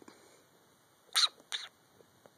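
Shih Tzu–poodle puppy making two short, breathy sounds about a third of a second apart, a little over a second in.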